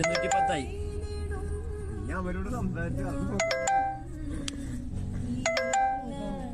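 A bright, bell-like chime of several quick ringing notes, sounding three times, over background music and voices.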